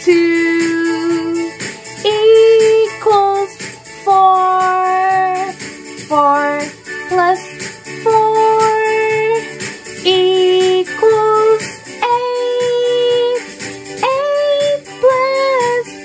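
A woman singing a children's addition song in English, with lines such as 'two plus two equals four, four plus four equals eight, eight plus eight equals sixteen', over a backing music track.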